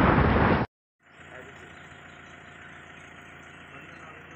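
The loud whoosh-and-boom sound effect of a TV channel's logo intro, cutting off suddenly about two-thirds of a second in. After a brief silence, faint steady outdoor background noise with a low hum follows.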